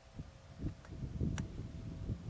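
Wind buffeting the microphone in uneven low gusts, with one faint click a little after halfway.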